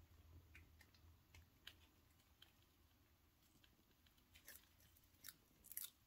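Near silence with faint crisp clicks that come thicker in the last second and a half: a panther chameleon crunching a cockroach it has just caught.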